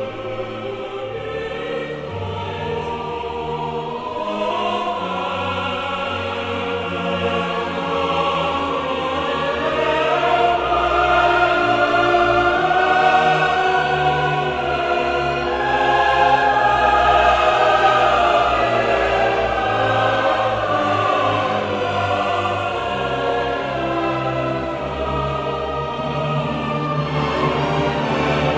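Opera chorus singing with full symphony orchestra, in sustained massed chords that swell to a loud climax in the middle and then ease back a little.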